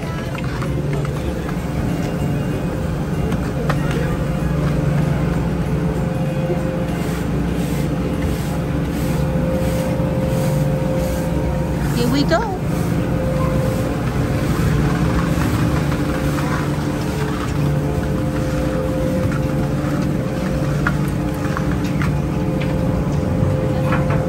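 Chairlift station machinery running with a steady, droning hum as chairs travel round through the loading area, with a short rising squeal about halfway through.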